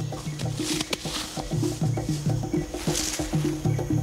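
Male chimpanzee vocalising during a charging dominance display: a low hooting call repeated about three times a second, over background music.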